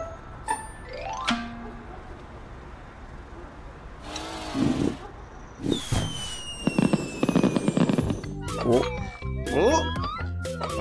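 Cartoon fireworks sound effects: a rising whistle as a rocket shoots up, then whooshing, crackling bursts and a long falling whistle. Background music plays throughout, and short vocal sounds come near the end.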